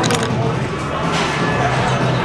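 Busy restaurant ambience: steady diners' chatter with background music, and a couple of light clicks near the start and about a second in.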